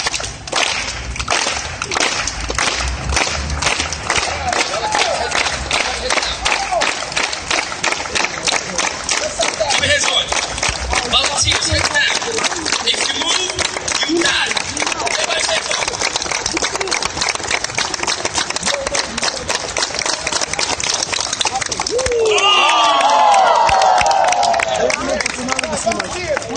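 A crowd clapping along together, many sharp claps running throughout, with loud shouting and cheering voices rising over it about three-quarters of the way through.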